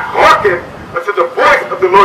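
Only speech: a man reading scripture aloud, loud and forceful, over a microphone.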